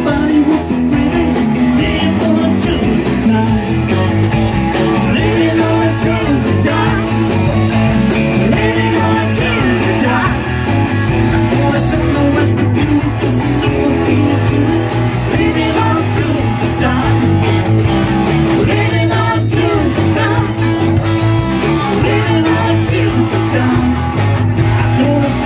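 Live rock-and-roll band playing a number on electric guitars and drum kit, with singing.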